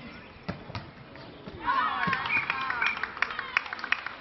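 Faustball being played on grass: two sharp thuds of the ball being struck and bouncing in the first second, then loud shouting voices from about halfway, with scattered short knocks.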